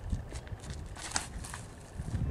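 A disc golfer's feet scuff and crunch on a dirt tee pad during the run-up and release of a drive, with a cluster of scratchy scuffs about a second in, over a low wind rumble on the microphone.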